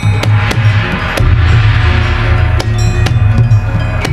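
Javanese gamelan ensemble playing kuda lumping music: struck bronze keys and gongs over drumming, with a strong, deep pulse underneath. A bright hiss swells and fades in the middle of the passage.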